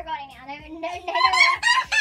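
A person's long, high-pitched, wavering squeal that rises and grows louder toward the end.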